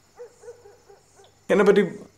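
A soft, high-pitched giggle: a faint run of about six short notes, then speech breaks in loudly near the end.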